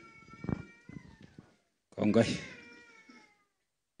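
A public-address microphone being handed over: a handling knock about half a second in and a faint steady ringing tone in the loudspeakers. Then a man's short "eh" comes over the PA about two seconds in.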